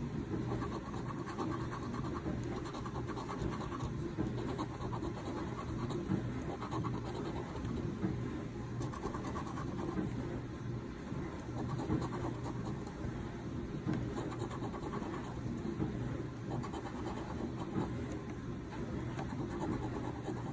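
A coin scraping the latex coating off a paper scratch-off lottery ticket in rapid back-and-forth strokes, a continuous rough scratching.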